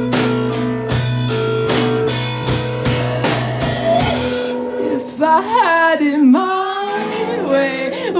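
Live rock band playing: a steady drum beat of about three hits a second under bass and electric guitar. About four seconds in the drums and bass drop out, leaving notes that slide and bend in pitch.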